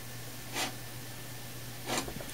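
Low steady hum of a running Dell Optiplex 390 desktop computer, with two short breaths, one about half a second in and one near the end.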